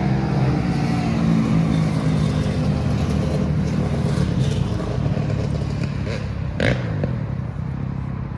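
A motor vehicle engine running steadily at a low, even pitch, slowly getting quieter near the end. A brief sharp sound cuts in about two-thirds of the way through.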